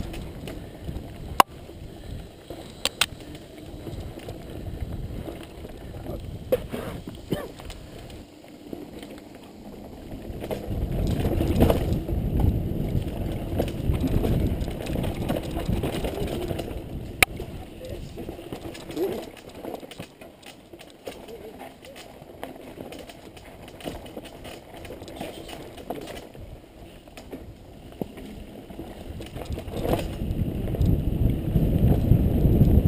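A mountain bike rolling down a dirt singletrack, heard from the bike: a rumbling mix of tyre noise and wind on the microphone that swells and fades with speed, with a few sharp rattles and knocks as the bike hits bumps.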